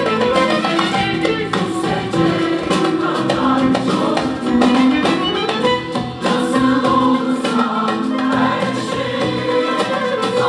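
A mixed choir singing a Turkish art-music song in unison with long held notes, accompanied by violin, acoustic guitar and a light rhythmic beat.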